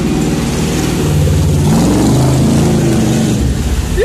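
Chevy 350 V8 of a 1979 Jeep CJ-5 revving hard under load as it pushes through deep creek water. The engine note gets louder about a second in, climbs around the middle, then falls back near the end.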